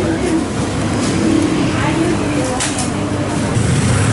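Busy street background: a steady low hum of motorbike and car traffic with voices in the background. A brief crackle comes about two and a half seconds in.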